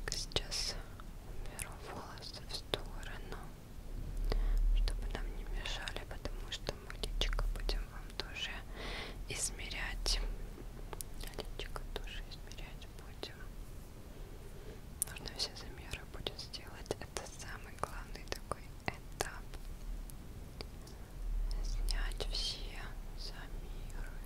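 A woman whispering close to the microphone, with many small sharp clicks scattered through the whispers.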